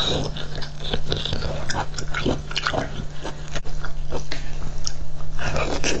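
Close-miked biting and chewing of raw shellfish slices: a continuous run of wet, squishy mouth clicks and smacks.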